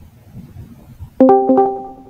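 A short app notification chime, likely from the Discord call: three quick plucked-sounding pitched notes a little past a second in that ring out and fade.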